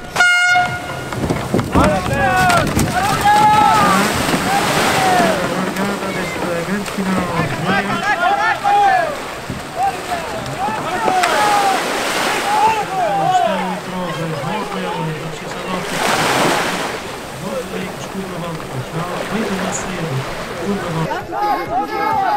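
A horn sounds for under a second at the very start, the signal for a surfski race start. It is followed by voices shouting throughout, with two washes of surf or splashing noise in the middle.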